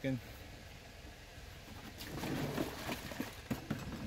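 Water sloshing in a plastic gallon jug shaken by hand, starting about halfway through, with a few sharp plastic knocks near the end. The shaking mixes pH-down drops into the nutrient solution.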